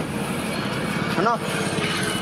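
Street traffic: a steady hum of vehicle engines going by, with a short spoken phrase a little over a second in.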